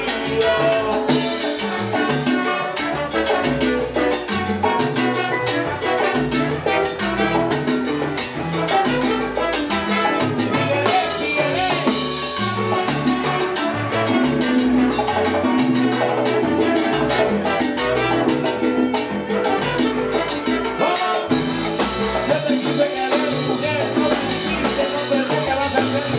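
Live salsa band playing with a male lead singer singing into a microphone, over steady, busy percussion.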